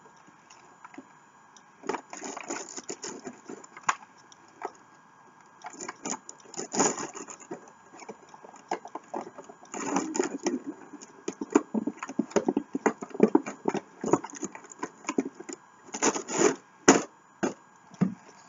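A makeup gift set being unpacked from its box: irregular scraping, rustling and clicking of the packaging and case, starting about two seconds in.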